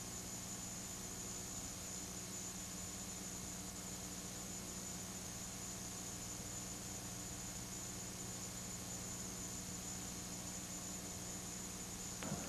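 Steady faint hiss with a low electrical hum underneath, unchanging throughout: the background noise of the recording, with no other sound.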